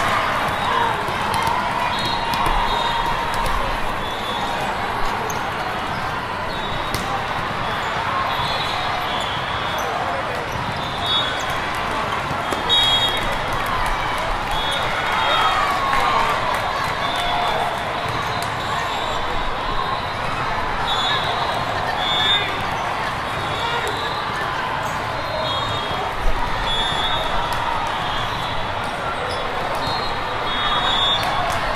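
Busy volleyball hall ambience: a steady din of many voices echoing in a large room, with a few sharp volleyball hits and frequent short high-pitched squeaks.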